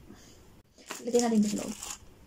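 A woman's voice speaking a short phrase about a second in, after a quiet start.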